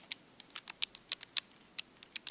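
Plastic keys of a Texas Instruments TI-30X calculator being pressed, about ten quick clicks at uneven spacing, as a division is keyed in.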